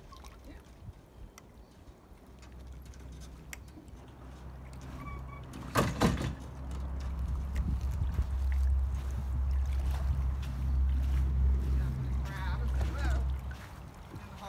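Low rumble of wind buffeting the microphone outdoors, getting heavier about halfway through, with a short spoken word just before it builds.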